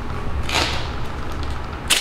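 Tape pulled off the roll in two rips: a longer rasp about half a second in, and a short, sharper one just before the end.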